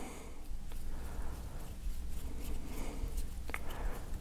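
Faint handling noise of a small laser bore-sight arbor being screwed together by hand, with a couple of faint ticks, the clearer one near the end.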